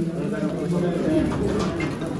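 Low, indistinct murmur of several people's voices close by, with no clear words.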